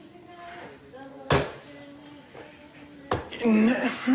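Two sharp knocks, one about a second in and another about three seconds in, amid quieter voices. Loud speech follows near the end.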